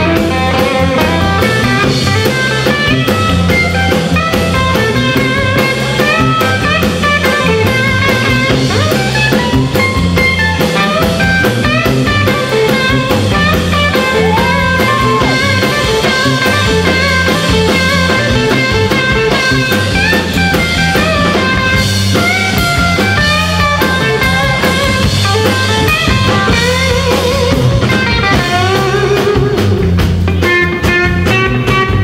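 Live band playing an instrumental break: Telecaster-style electric guitar picking lead lines over a stepping bass line and drum kit.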